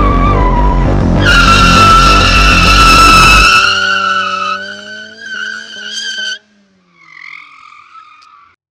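Car tyres squealing as a car slides on a skid pan: one long, steady squeal begins about a second in over background music with a drum beat. After the music stops, the engine is heard revving up beneath the squeal until both cut off suddenly, followed by a fainter squeal near the end.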